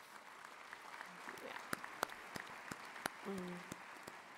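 Audience applauding, with separate handclaps standing out from the steady patter. A brief voice sounds about three seconds in.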